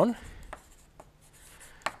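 Chalk writing on a blackboard: faint scratching with a few sharp taps as the letters are drawn.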